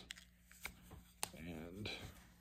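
Two small clicks about half a second apart as a flocked hinged medal presentation case is opened.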